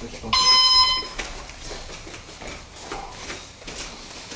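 Electronic gym round-timer buzzer sounding one steady, high-pitched tone for just under a second, shortly after the start.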